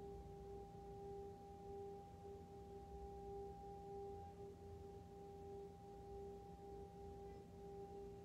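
Hand-held singing bowl being rimmed, giving a faint steady ringing tone with a fainter higher overtone above it; the main tone swells and fades in a slow, uneven pulse.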